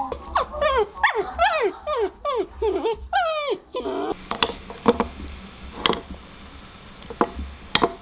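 A small dog whining excitedly: a quick run of about ten high whines, each sliding down in pitch, over the first three seconds or so, set off by hearing its own voice. A few light clicks and taps follow.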